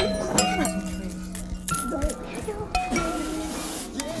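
Musique concrète built from clinking kitchen sounds and scraps of processed voice over a low held tone. Sharp clinks and short ringing tones are scattered through it.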